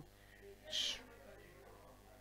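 A pause in a man's speech with faint steady background hum, broken by one short hissy breath a little under a second in.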